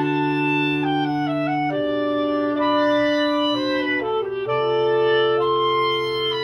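Clarinets playing in several parts: slow, sustained chords that change every second or so. A low held note sounds beneath them, drops out for a couple of seconds midway, and returns.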